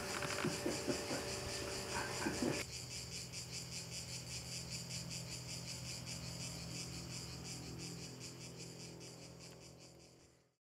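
A chorus of insects chirring in a fast, even pulse over a low steady hum, fading out near the end. For the first couple of seconds it is mixed with room noise and a few soft knocks, which stop abruptly.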